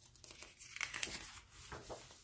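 A page of a picture book being turned by hand and pressed flat: paper rustling and swishing, loudest about a second in.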